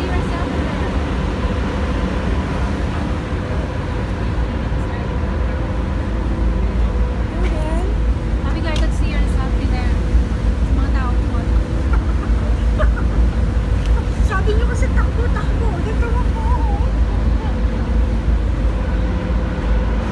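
Ferry's engines running with a steady hum over a low, constant rumble. Distant voices come and go through the middle of the stretch.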